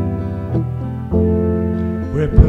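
Keyboard playing slow, held chords in an instrumental passage of a gentle ballad, changing to a new chord about a second in.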